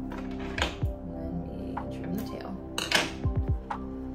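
Background music, with a few light clicks and clinks and some rustling as pinned satin fabric is handled at the sewing table; the sharpest knock comes about three seconds in.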